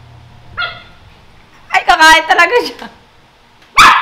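Small dog barking: one short bark about half a second in, then a louder run of high barks and yelps around the middle, and a sharp loud sound just before the end.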